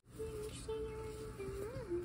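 A person's voice holding a long, drawn-out "okay" like a sung note, which dips a little and then rises and falls near the end.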